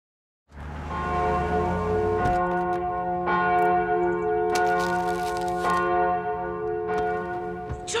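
Church bells ringing, struck roughly once a second, each stroke ringing on into the next.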